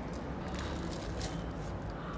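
Small plastic pots of sequins handled by hand, giving a few faint clicks and rustles over a steady low background hum.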